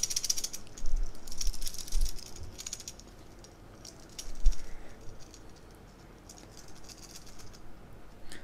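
Solid-link metal bracelet of an AVI-8 Blakeslee chronograph rattling in several short bursts as the watch is shaken in the hand, with one dull bump about halfway through. The rattle comes from links that sit a little loose.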